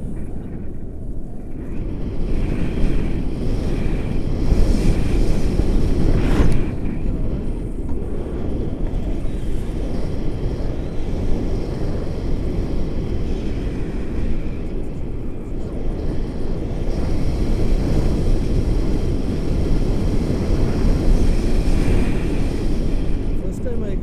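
Wind buffeting the action camera's microphone during a tandem paraglider flight: a loud, steady low rushing.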